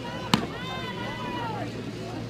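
A single sharp knock about a third of a second in, followed by faint background voices over a steady low hum.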